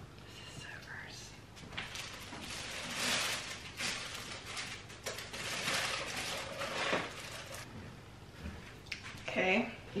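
Plastic oven bag rustling and crinkling in irregular bursts as a whole raw turkey is worked into it by hand.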